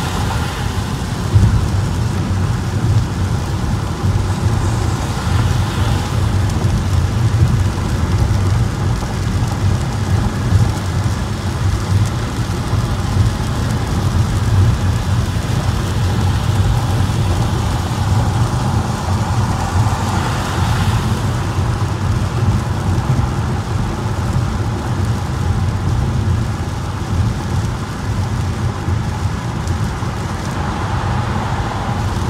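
Rain drumming on a car and tyres hissing on a wet freeway, heard from inside the cabin over a steady low rumble of road noise. The higher hiss swells briefly twice, about five and twenty seconds in.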